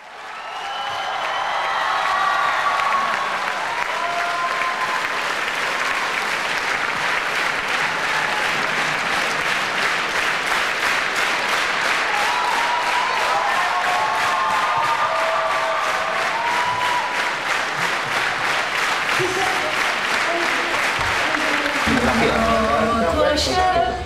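Large concert-hall audience applauding, fading in at the start, with voices calling out over the clapping. Through the second half the clapping falls into a steady rhythm.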